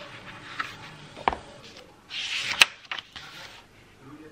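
Fabriano A5 hardcover sketchbook being opened and a page turned by hand: a sharp tap about a second in, then a brief papery swish that ends in a crisp slap of the page a little past halfway, with a couple of lighter ticks after it.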